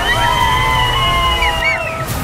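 Several people whistling loudly through their fingers to cheer: long, steady whistles held at different pitches and overlapping, then short rising-and-falling whistles near the end, over a low rumble.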